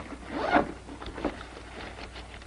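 Handling noise from an object on a table: a short rasp of rustling about half a second in, then a few light clicks.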